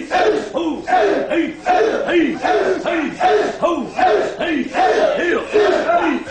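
A group of karateka in a dojo shouting kiai together in a steady rhythm, about three short falling shouts a second, in time with repeated punches.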